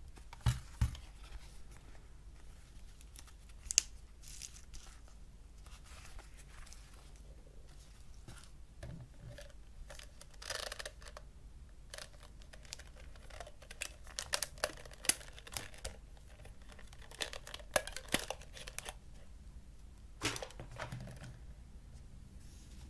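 Handling noise on a tabletop: a plastic player case and a power adapter with its cable picked up, turned over and set down, giving scattered sharp clicks and knocks with stretches of rustling.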